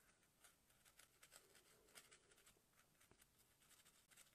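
Near silence, with faint soft ticks of a fine paintbrush dabbing on paper.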